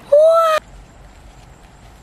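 A woman's high, drawn-out exclamation of amazement, a 'whoa', rising at the start and cut off abruptly about half a second in. After it there is only a faint steady background with a thin high whine.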